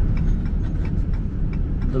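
Pickup truck driving on the road, heard from inside the cab: a steady engine and road-noise rumble with faint light rattles.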